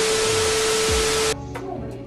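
A loud burst of static-like hiss with a single steady low tone running through it, dropped in suddenly and cutting off abruptly after about a second and a half, like an edited-in sound effect; quieter background music continues after it.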